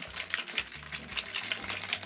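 Crushed ice rattling in a metal cocktail shaker shaken hard, a rapid, even rattle of about five or six knocks a second.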